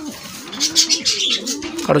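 Satinette pigeons cooing: a drawn-out coo that rises and falls in pitch over about a second and a half, with a man's voice starting at the very end.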